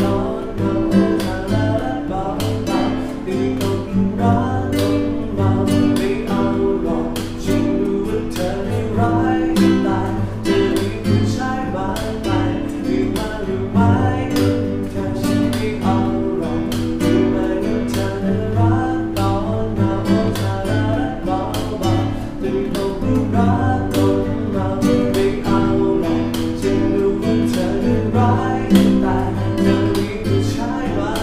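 Classical guitar played fingerstyle: plucked bass notes under a picked melody, many notes a second.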